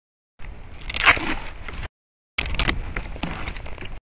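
Crackling, scraping handling noise with many sharp clicks, close to the nest camera's microphone, as the pole works against the camera and the nest twigs. It is loudest about a second in, and the sound cuts out to dead silence twice.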